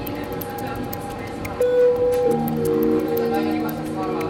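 Background music of soft held chords, with one louder held note about a second and a half in, followed by a change of chord.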